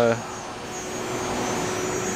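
Steady fan noise with a faint low hum from a wall-mounted split-system air conditioner outdoor unit, slowly growing louder.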